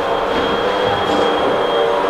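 A steady mechanical drone with several held tones and a thin, high steady whine above them, unchanging throughout.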